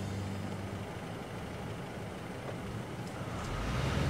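Car engine idling with a steady low rumble that grows louder about three and a half seconds in.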